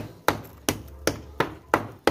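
A hand tool knocking repeatedly at an old clay flowerpot to break it apart, in sharp knocks about two to three a second. The pot is being broken because it is packed with roots.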